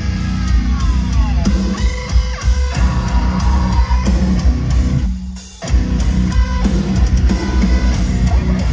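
Heavy metal band playing live: distorted electric guitars and drum kit at full volume, with a brief stop about five seconds in before the band comes back in.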